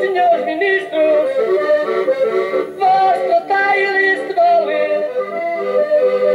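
Accordion playing a Portuguese folk tune in an instrumental break between sung verses, moving through held notes and chords.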